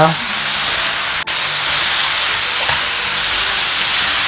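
Potatoes and fish cake stir-frying in oil and soy-based sauce in a frying pan, a steady sizzle.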